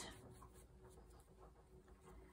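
Near silence: faint rubbing of a brush on paper while ink is worked onto a cut-out paper flower.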